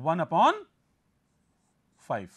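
A man's voice speaking for about half a second, then near silence.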